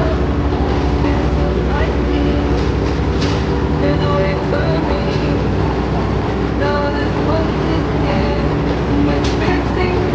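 Steady low drone of a diesel passenger train idling at the platform, with people's voices over it.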